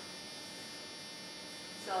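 Steady electrical hum with a buzzy comb of many even overtones, unchanging throughout. A voice comes in with one word at the very end.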